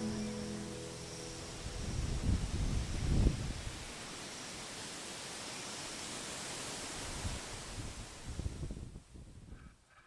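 Outdoor hiss with wind buffeting the camera microphone in low gusts, strongest about two to three seconds in and again later, fading out near the end. The last guitar chord of the background song rings out at the start.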